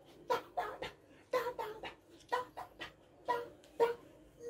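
A man's voice giving short, sharp yelping cries, about eight of them in four quick pairs roughly a second apart.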